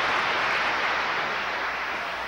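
Sustained applause from a large audience, a dense even clatter of many hands clapping that eases slightly toward the end.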